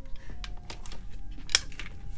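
Small plastic clicks and taps from a Bed Head Wave Artist deep waver being handled as its lock is worked, with one sharp click about one and a half seconds in as the lock releases.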